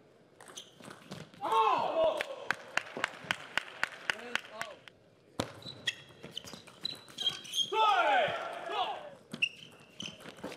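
Table tennis ball clicking off rackets and the table in quick rallies. Players' loud shouts come about a second and a half in and again near the end.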